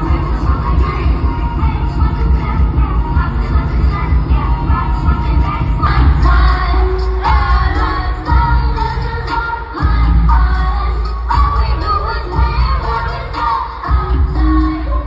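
Live concert music heard through the hall's PA: a vocalist singing over a beat with heavy bass.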